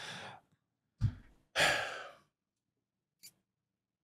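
A man breathing into a close studio microphone: a short breath, a low thump about a second in, then a longer sigh, and a tiny click near the end.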